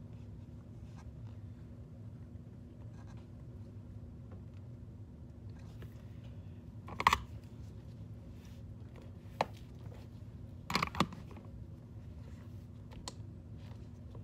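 Steady low hum of a lab room, with a few light clicks and taps from small tools and parts being handled at a soldering bench: the loudest about seven seconds in and a quick pair near eleven seconds.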